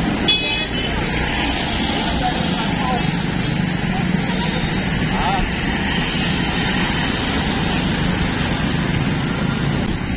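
Steady rush of wind and road noise on a phone microphone carried along on a moving electric bicycle, with city traffic around it. A short high beep comes just after the start.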